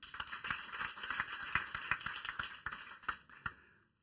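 Small audience applauding, dense clapping that thins out and stops about three and a half seconds in.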